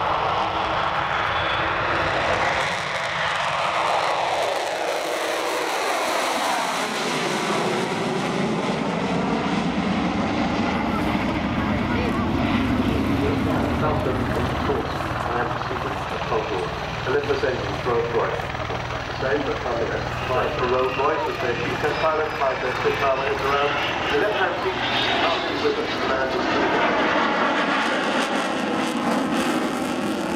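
Avro Vulcan bomber's four Olympus turbojets at full power on the takeoff roll and climb-out: a continuous loud jet roar. A falling sweep in pitch runs through it a few seconds in, and another sweep comes near the end as the aircraft passes.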